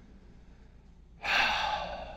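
A man's audible sigh: a breathy exhale that starts suddenly a little past halfway and fades away.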